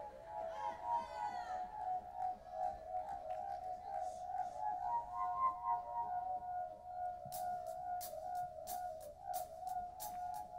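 Live pop-rock band music: a sustained, wavering instrumental drone holds through, and a steady high ticking of about three beats a second comes in about seven seconds in.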